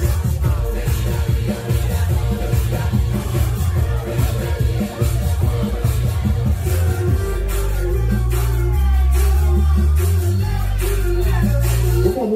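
Dance music played by a DJ through a PA system, loud, with a heavy bass beat. About halfway through, the drum hits thin out and long held bass notes take over.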